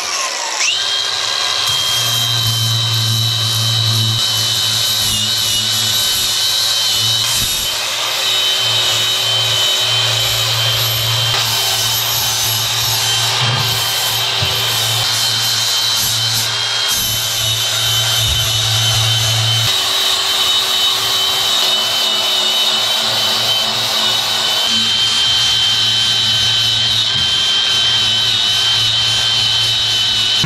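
Milwaukee cordless angle grinder running steadily with a constant high whine as its disc grinds down the steel surface and edges of an old safe.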